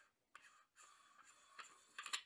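Faint scratchy rubbing of fingers and metal as a Nikon-lens CMOS adapter is twisted onto a ZWO ASI224MC astronomy camera, with a couple of small clicks, the last and sharpest near the end.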